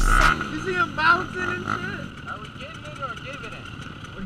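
Small dirt-bike engines running close by, their pitch rising and falling, with voices in the background. Music cuts off a moment in.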